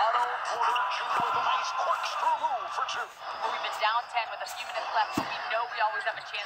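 Audio of a televised NBA basketball game: a commentator talking over the steady noise of the arena crowd, with a couple of brief knocks from the court.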